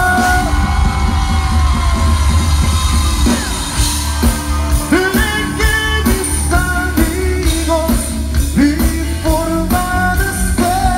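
A Tejano band playing loud through the stage PA, with heavy bass, drums and guitar under a lead vocal.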